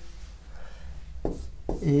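A pen tapping and scratching faintly on an interactive whiteboard while an equation is written, with a short tap about a second in.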